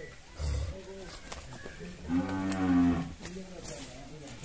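Cattle mooing: one long, low moo lasting about a second, starting about two seconds in.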